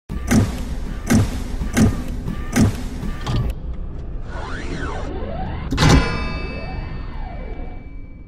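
TV channel intro sting: electronic music with five heavy hits about three-quarters of a second apart, then sweeping sounds that rise and fall, and a final big impact about six seconds in whose ringing tone slowly dies away.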